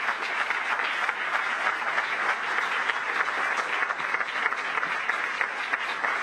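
Audience applauding steadily, many hands clapping at once.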